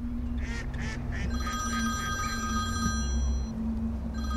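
Mobile phone ringing with an electronic ring tone: one steady ring of about two seconds starts about a second and a half in, over a steady low hum.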